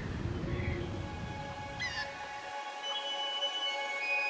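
Animated film soundtrack: a low ambient rumble that fades out about two and a half seconds in while soft orchestral music swells in with held notes. A short chirping call, gliding down in pitch, comes about halfway through.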